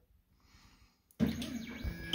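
Near silence, then about a second in a steady low hum with a hiss over it starts suddenly: the Ultimaker 3D printer running after being sent a print job, heating up.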